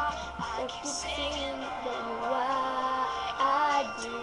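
A young girl singing a pop ballad along with a backing track, with held, gliding sung notes over steady accompaniment.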